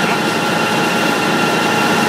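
Steady running noise of feed-extrusion plant machinery: a dense, even hum with a few steady whining tones held over it.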